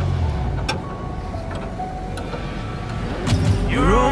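Spanners clinking on the steel fittings of a truck's rear leaf spring as it is loosened, a few sharp metallic clicks with faint ringing. Background music stops just after the start, and a rising pitched sound swells near the end.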